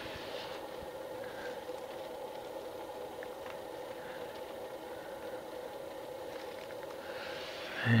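Steady background hum of a running machine, with a couple of faint clicks.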